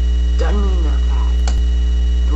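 Loud, steady electrical mains hum in the recording, a low buzz with a ladder of overtones. A brief voice sound comes about half a second in, and a sharp click about a second and a half in.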